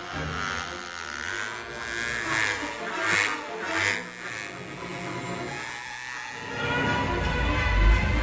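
Orchestral film score with cartoon sound effects: swishes as the flying toy sweeps past and the buzzing whir of a toy plane's propeller. A deep rumble swells near the end.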